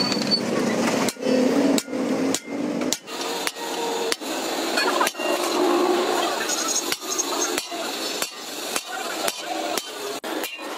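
Hammer striking a steel punch against a sheet of metal resting on a small anvil block: a run of sharp, repeated metallic taps, a little under two a second, as a pattern of dots is punched into the sheet.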